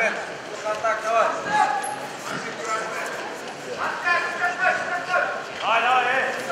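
Voices shouting in short, repeated calls, the pitch rising and falling, several loud calls close together near the end.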